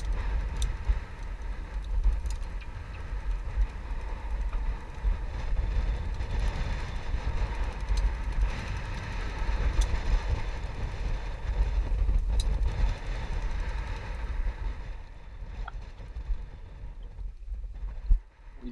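Steady rush of gale wind and sea with wind buffeting the microphone, and a few light knocks; the noise drops noticeably about three seconds before the end.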